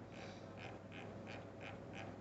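Faint short blips, about three a second, as the Kikusui TOS3200 leakage current tester's timer setting is stepped through values with its rotary control.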